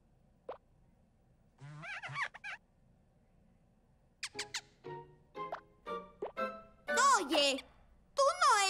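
Cartoon sound effects and wordless character vocalising: a single short plop early on, a wavering hum, then a string of short squeaky blips at different pitches, ending in a louder warbling voice.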